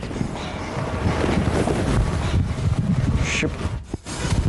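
Close rustling and rubbing of clothing against the microphone as a bead necklace is pulled over the head and settled at the collar.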